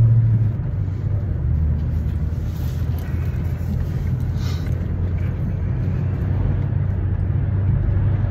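Steady low drone of a car's engine and road noise, heard from inside the cabin while driving; the engine note drops slightly about half a second in.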